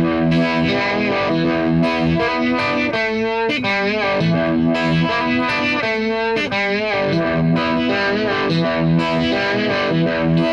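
Strat-style electric guitar through Univibe and Octavia pedals, played with distortion: a blues-rock phrase in E minor pentatonic with behind-the-nut bends pulling the open G string up toward G sharp, the pitch bending up and back down several times.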